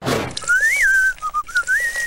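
A person whistling an off-key, wavering tune in short rising and falling phrases, after a brief rush of noise at the start.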